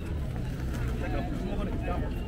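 Passers-by talking in a crowd of pedestrians, their voices indistinct, over a steady low rumble.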